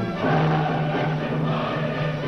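Classical recording of orchestra and choir singing held chords; a fuller, louder chord comes in about a quarter second in.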